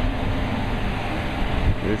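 Steady low background rumble with a faint hum, even in level with no distinct events.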